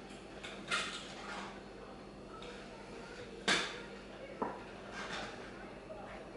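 Plastic toy blocks and toy trucks clattering and knocking as a toddler rummages through them, a few separate sharp knocks with the loudest about halfway through.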